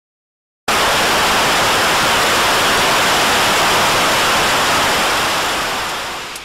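Loud, even hiss of static noise from an intro glitch effect. It starts suddenly after a brief silence and eases slightly near the end.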